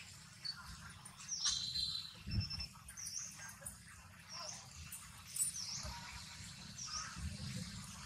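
A small bird calling in the background: short, high chirps that dip and rise in pitch, repeated about once a second, over a low steady rumble.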